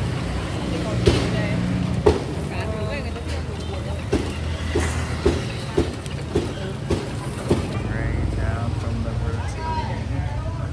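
Chain-driven rotisserie grill with its rows of metal spits turning, giving a run of regular clicks about twice a second in the middle, over a steady low rumble of street traffic.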